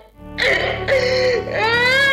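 A brief dip to near silence, then music starts about half a second in: a high voice sings long, sliding, bending notes over a steady low drone.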